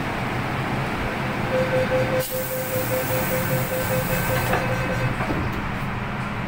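Hong Kong MTR metro train at a platform: the steady hum of the carriage, with rapid door-closing warning beeps from about a second and a half in until near the end. A hiss sounds over the beeps, then a knock as the doors shut and the train begins to move off.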